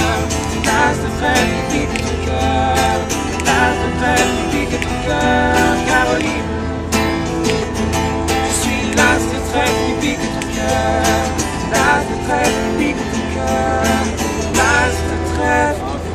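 Two acoustic guitars strummed in a steady rhythm, with men's voices singing over them.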